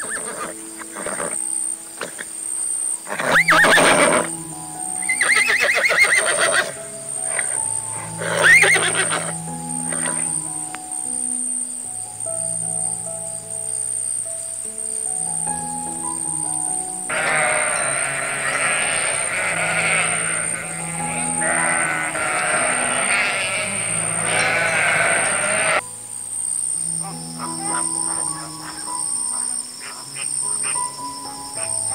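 Calm background music with soft, held notes throughout. Over it, three loud horse whinnies in the first ten seconds. Later comes a long stretch of goat bleating, about nine seconds with one short break in the middle.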